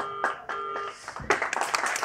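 Two short notes at the same pitch from the band, then audience applause starting a little over a second in and growing louder.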